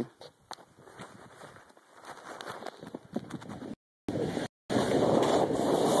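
Rushing noise of wind on a phone microphone and a snowboard sliding through fresh powder. It starts faint, grows louder from about two seconds in, and cuts out twice briefly around the middle before running loud and steady.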